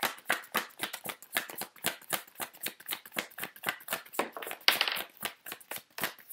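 A deck of oracle cards being shuffled by hand: a quick run of short card slaps and flicks, about five a second, with a longer sliding rush of cards a little after four seconds in.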